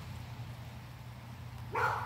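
Faint steady background hiss in a pause between a child's spoken lines, with the child's voice starting again in a breathy burst near the end.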